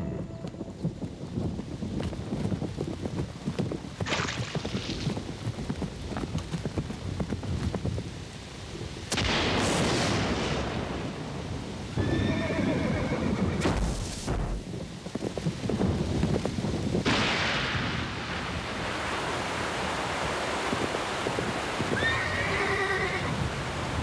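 Horse hoofbeats under a steady hiss of heavy rain, with several loud noisy surges of storm. The horse whinnies about halfway through and again near the end.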